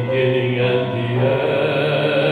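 A man singing a contemporary worship song into a microphone, holding long notes over keyboard accompaniment.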